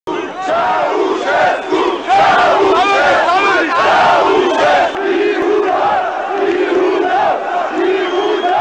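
A large crowd of people shouting together, many voices rising and falling in repeated loud cries.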